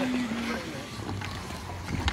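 Ice skate blades gliding and scraping over rink ice, a steady hiss that fades slightly.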